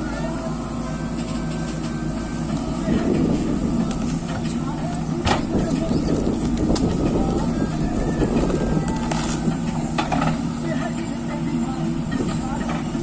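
JCB backhoe loader's diesel engine running as the backhoe digs and lifts soil, working harder from about three seconds in until near the end, with a couple of short sharp knocks from the bucket in the middle.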